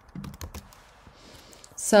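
A quick run of computer keyboard key clicks, about half a dozen in the first second.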